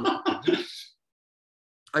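A man's short burst of laughter that breaks off into dead silence about a second in; speech starts again right at the end.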